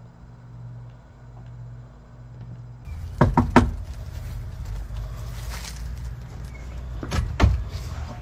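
Knocking on a house's front door: a cluster of sharp knocks about three seconds in and another near the end, over a steady low hum.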